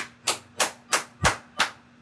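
A percussive drum beat: sharp, evenly spaced hits about three a second, with one deeper kick-like hit near the middle.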